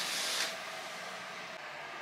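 Heavy hotel curtain drawn open, a short swish of fabric and runners that fades out about half a second in, followed by a steady hiss of room tone.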